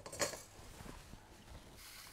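A brief handling noise about a quarter second in as a stainless steel mixing bowl and spatula are picked up, then faint small kitchen noises.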